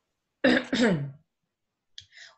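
A woman briefly clearing her throat: one short two-part vocal sound, starting about half a second in and falling in pitch.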